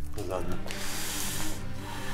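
Background music score with steady low sustained tones. A man's short exclamation comes at the start, and a breathy hiss lasts about a second.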